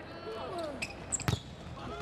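A volleyball struck hard once, a sharp smack about a second in, with a couple of lighter knocks just before it, over shouting voices in the arena.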